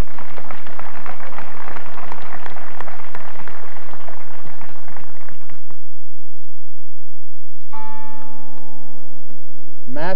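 Audience applause that dies away after about five seconds. Near the end a steady held tone with several overtones sounds for about two seconds.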